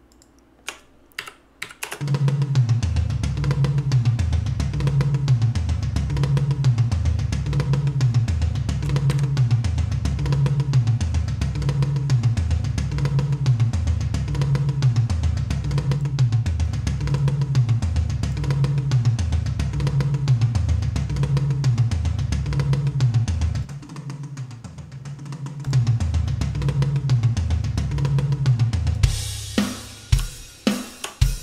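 A programmed MIDI rock drum kit played back from sampled drums: a repeating pattern of kick, snare, low drums and cymbals. A few single hits sound in the first two seconds before the pattern starts. Past the middle it drops to a quieter, thinner sound for about two seconds, then comes back at full level.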